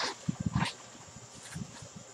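A clear plastic bag rustling and crinkling as a hand handles it. There are a few short crackles in the first second and another about a second and a half in.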